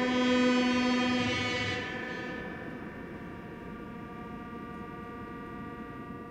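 A live band holds a sustained chord on electric violin and keyboards, with no rhythm. It is loudest in the first two seconds, where a low note drops out, then settles into a quieter, steady drone.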